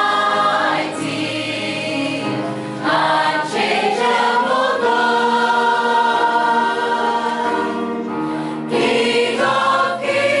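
Mixed choir of women's and men's voices singing a hymn, in phrases with short breaks, including one long held chord in the middle.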